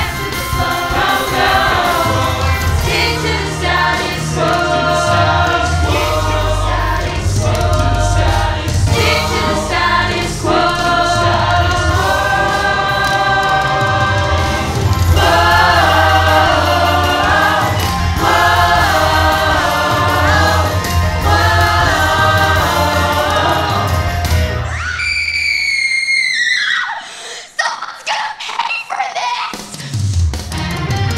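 Stage-musical cast singing together in a chorus over backing music with a steady bass. About 25 seconds in, the backing drops away and a single high note slides down in pitch, before the full music comes back in at the end.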